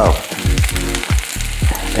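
Chopped onions sizzling in a hot frying pan, a steady crackling hiss, under background music with a deep, sliding bass beat.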